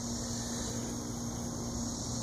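Steady background noise with a faint constant hum and a high steady hiss, with no distinct event.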